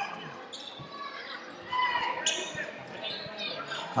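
A handball bouncing on the hard floor of an indoor sports hall, a series of separate knocks as players dribble. Faint players' voices call out during the play.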